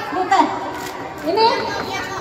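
Excited voices calling out and chattering in short, high-pitched bursts, with several people overlapping.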